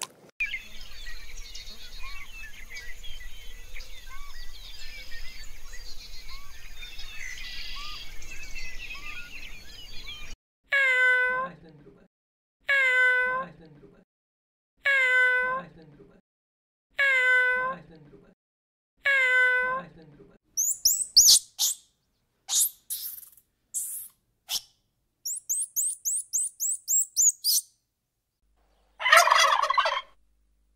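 A domestic cat meowing six times, about one call every two seconds, after ten seconds of steady faint hiss with small scattered chirps. The meows give way to a run of quick, high chirps, and near the end a turkey gobbles.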